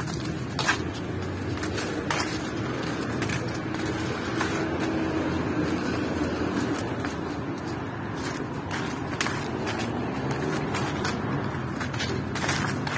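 Street traffic: a steady motor-vehicle hum that grows stronger in the middle, with occasional footsteps on the leaf-strewn pavement.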